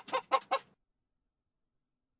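Hens clucking, a quick run of short clucks about five a second that stops less than a second in.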